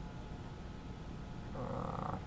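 A steady low background rumble. Near the end, a short breath of about half a second is drawn in before speaking.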